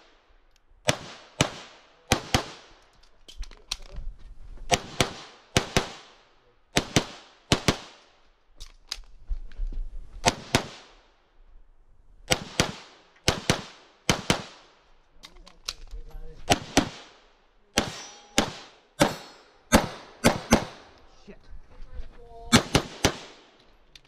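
Grand Power X-Caliber 9mm pistol fired in quick pairs of shots, pair after pair with short pauses between them, as the shooter moves through a stage.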